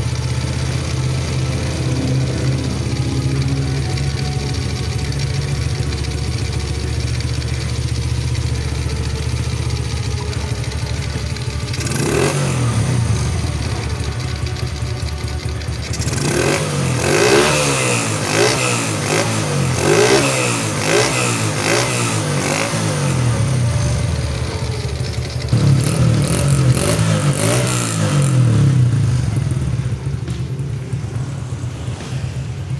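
Honda Astrea Legenda's single-cylinder four-stroke engine with a newly fitted Supra X 125 carburettor, idling steadily while its air screw is being set. About twelve seconds in it is blipped once, then revved up and down over and over in two runs, the second near the end.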